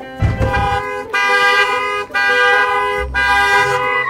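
Car horn honking in two long blasts, the first about a second long and the second nearly two seconds, after a low thump near the start.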